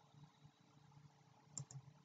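Near silence: faint room tone, with two small clicks in quick succession about a second and a half in.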